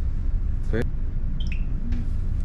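Steady low machinery hum, with a couple of faint short high tones about one and a half seconds in.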